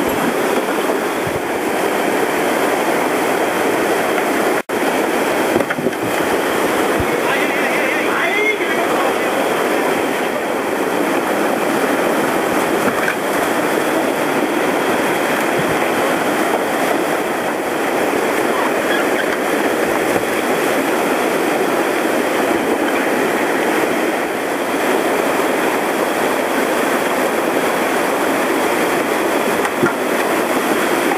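Loud, steady rushing of whitewater rapids on a small river running high with snowmelt and rain.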